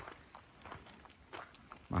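Footsteps of a person walking on a dirt forest trail: faint, soft steps at a walking pace.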